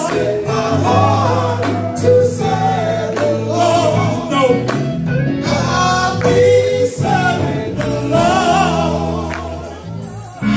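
Live gospel music: a woman and a man singing a praise song into microphones over a band, with an electric guitar and held low bass notes.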